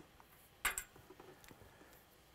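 A short, sharp click about two-thirds of a second in, followed by a few faint ticks, over quiet room tone.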